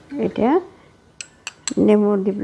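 A metal spoon clinks sharply against a ceramic bowl three times in quick succession, between two short vocal sounds.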